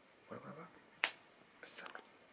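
A brief low mumbled vocal sound, then one sharp click about a second in, then a short whispered hiss near the end.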